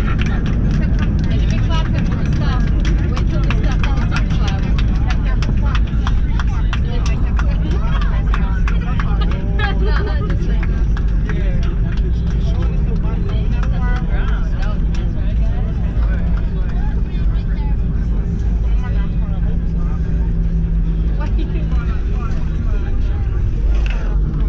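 Cabin noise of an Airbus A319 on its landing run: a loud, steady low rumble from the engines and the wheels on the runway, with frequent small rattles and clicks. Passengers talk indistinctly over it.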